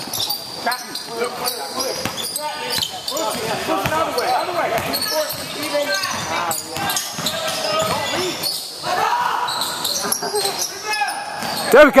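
A basketball bounced on a hardwood gym floor, with shoes moving on the court and indistinct voices of players and onlookers echoing in a large hall. A loud shout comes near the end.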